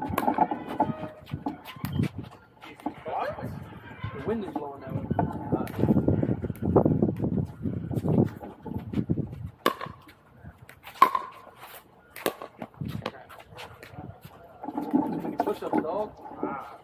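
Players' voices talking across the court for the first half. About ten seconds in come several sharp pops about a second apart, the loudest of them just after: a pickleball paddle striking the hollow plastic ball in a short rally.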